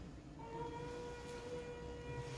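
A person's voice holding one steady, high-pitched vowel note, starting about half a second in: phonation during a laryngoscopy so that the vocal folds vibrate for the examination. It is played from the endoscopy video over the room's speakers.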